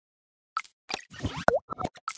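Animation sound effects: after a silent start, a quick run of short cartoon pops and blips begins about half a second in, some with brief sliding pitches, the loudest pop near the middle.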